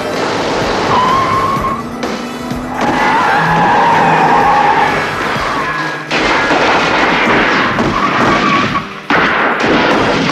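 Car-chase movie soundtrack: tyres squealing in several long screeches and car engines running hard, mixed over action score music, with abrupt changes in the mix about six and nine seconds in.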